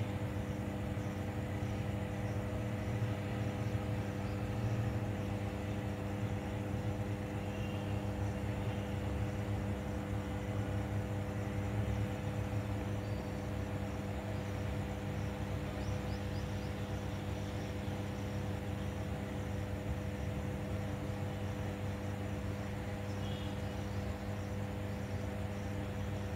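Steady electrical hum of high-voltage substation equipment: a low drone with several even, unchanging overtones over a constant low rumble.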